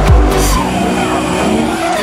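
Music with a deep bass beat, about two beats a second, cuts off abruptly about half a second in, leaving a drifting car's engine and tyres squealing as it slides sideways.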